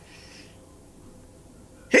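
A woman's faint breathing as a sneeze builds, then a sudden loud sneeze right at the end.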